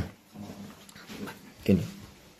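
A dog barking: one short, loud bark about a second and a half in, with fainter sounds between barks.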